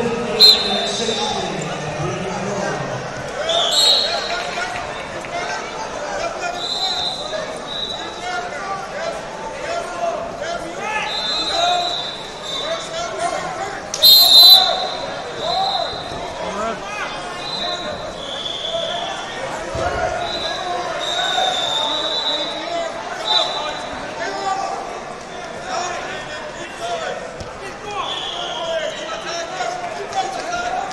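Many voices chattering across a large hall, with short referee whistle blasts coming again and again from the surrounding wrestling mats. A sharp, loud whistle blast stands out just after the start and again about 14 seconds in.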